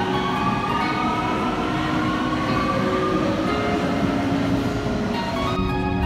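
Subway train moving through a station: a steady rumble with the whine of its electric motors, which rises slowly in pitch over the first few seconds. Near the end the sound changes abruptly to the duller noise inside a carriage.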